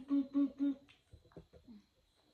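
A person humming a quick run of short "mm" notes on one unchanging pitch, about four a second, through the first second, followed by a few faint clicks.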